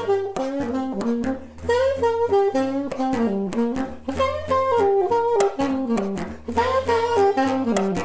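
Alto saxophone and bass clarinet playing jazz together: a quick, moving melody over low, held bass notes that change every second or two.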